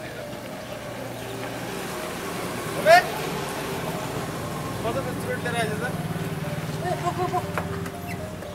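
Voices over a steady street-traffic engine hum, with one short, loud cry rising sharply in pitch about three seconds in.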